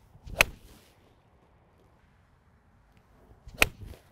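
Two iron shots about three seconds apart, each a short swish of the swing followed by the sharp click of a Mizuno JPX 923 Hot Metal iron striking a golf ball off turf.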